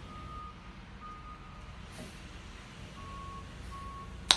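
Faint beeping of a vehicle reversing alarm: short single-pitch beeps about half a second long, a pause in the middle, then two slightly lower beeps near the end, over a low hum.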